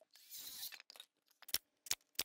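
Quiet handling of tools and lumber boards: a brief scraping hiss, then a few sharp clicks.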